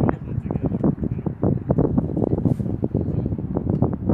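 Indistinct chatter of several passengers, with wind buffeting the microphone.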